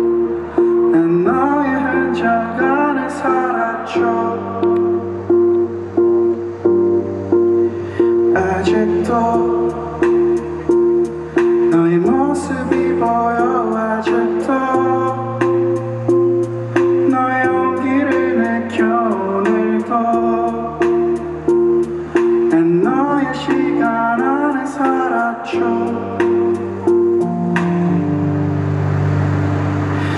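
Rock band playing live: the song's instrumental introduction. A steadily repeated plucked-string note figure runs over bass notes that change every couple of seconds, with a melodic line gliding above and light regular cymbal ticks.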